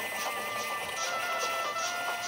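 Background music over a steady, unbroken steam-locomotive whistle tone: Gordon's whistle stuck open and sounding without a stop.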